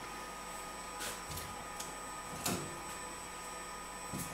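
Quiet, steady electrical hum and faint whine of workshop machines, with a few soft clicks and rustles as the transfer film and T-shirt are handled on the heat press station; the most noticeable click comes about two and a half seconds in.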